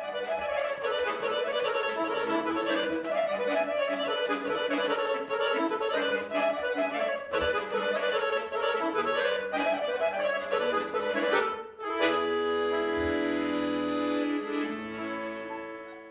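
Chromatic button accordion playing a quick run of notes, then about twelve seconds in switching to long held chords that fade toward the end.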